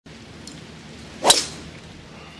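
A golf club striking a teed ball on a full swing: one sharp, loud crack a little over a second in, with a short ring after it.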